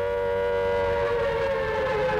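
Air-raid siren sounding a loud, steady wail at one held pitch, the warning of an approaching bomber raid.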